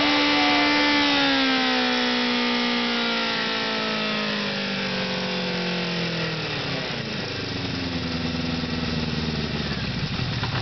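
Honda CB550's air-cooled inline-four engine held at high revs, then slowly falling in pitch as the throttle is let off, settling to a steady idle about seven seconds in. At idle a light knocking comes through, which the owner takes for the cam chain.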